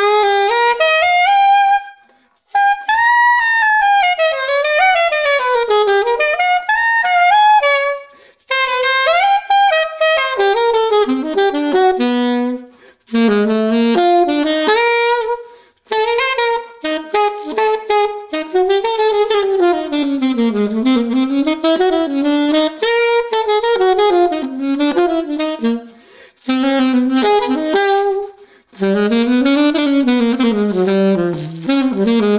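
Alto saxophone played unaccompanied through a refaced Meyer 5 mouthpiece with a #3 reed, a bright-toned setup, in jazz improvisation. Fast, winding phrases rise and fall, broken by short pauses for breath.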